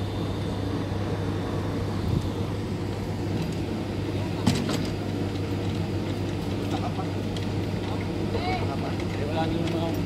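A steady, low engine hum runs throughout. About four and a half seconds in there is a brief knock, and faint voices can be heard near the end.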